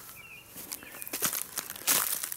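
Footsteps crunching on dry bark chips and wood mulch: a run of irregular crackly steps that grows louder, loudest near the end.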